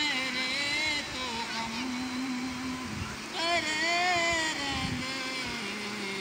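A man singing unaccompanied, drawn-out phrases with heavy vibrato, over the steady rush of a river.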